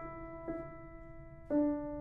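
Grand piano played slowly and sparsely. A soft note sounds about half a second in and a louder chord about a second and a half in, each left to ring and fade.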